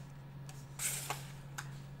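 Metal watercolour tin palette being handled and opened: a short hiss-like scrape about a second in, with a few light clicks.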